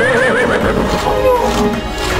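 A horse whinnying once, a wavering call in the first second, over background music.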